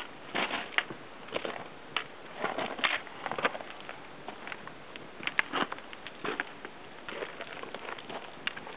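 Boots and a trekking pole crunching, scraping and clicking on loose rock while scrambling up a steep ridge, in irregular short strokes a few times a second.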